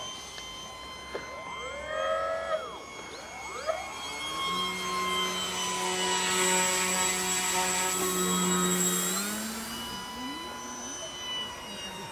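Radio-controlled model aircraft in flight: a steady high whine, joined about four seconds in by a lower motor note. The sound swells in the middle and rises in pitch near the end.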